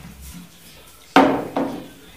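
A small white bowl set down on a wooden table: a sharp knock just after a second in, then a lighter knock.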